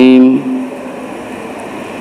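A man's spoken word ends, followed by about a second and a half of steady, even background hiss of room noise. Speech resumes at the very end.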